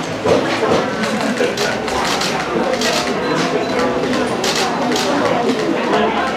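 Indistinct voices of several people talking in a room, with no clear words.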